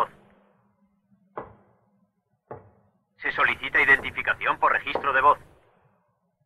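Speech, broken by two brief knocks about a second and a half and two and a half seconds in, then more speech.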